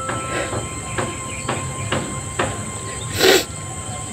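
A man crying: faint sniffles and uneven breaths, then a louder wet sniff or sob a little after three seconds in.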